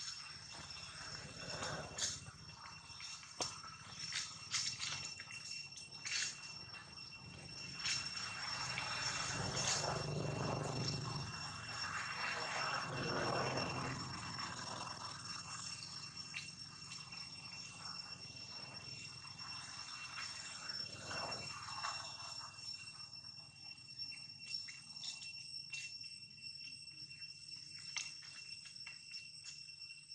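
Insects calling in two steady high tones, with scattered sharp clicks and a swell of rushing noise from about eight to fourteen seconds in.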